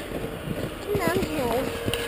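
A child's high voice starts about a second in, over footsteps crunching in snow.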